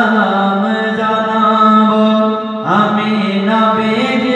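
A man singing a Bengali Islamic gazal solo into a microphone, holding long notes with ornamented turns of pitch and starting a new phrase near the end.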